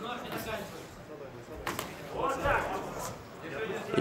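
Faint shouting voices in a large hall, with one sharp smack a little under two seconds in.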